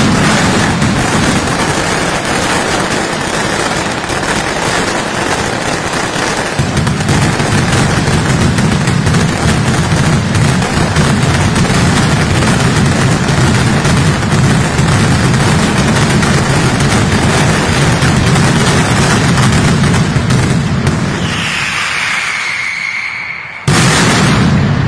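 Mascletà firecrackers (masclets) exploding so thickly that the bangs merge into one loud, continuous rumble, typical of the ground-shaking 'terremoto' finale. The rumble deepens about six seconds in. Near the end it drops off briefly with a falling whistle, then starts again abruptly at full loudness.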